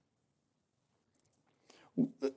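A pause in a man's speech: faint room tone, with a soft breathy sound about a second in and his voice starting again at the very end.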